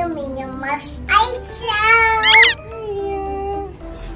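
Light background music mixed with a young child's high voice and a woman's speech; the loudest moment is a high, wavering child's voice about two seconds in.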